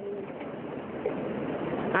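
A bird calling faintly over a steady background noise that swells slightly.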